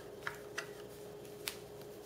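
Flathead screwdriver turning the takedown screw on a Marlin 39A lever-action .22's receiver to loosen it: a few faint metallic clicks, the sharpest about one and a half seconds in.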